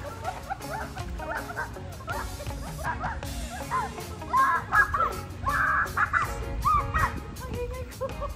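Children shrieking and shouting in play in a swimming pool, over upbeat background music. The shrieks grow louder about halfway through.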